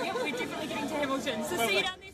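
Indistinct conversation among a crowd of people, several voices chattering at once, dropping away at the very end.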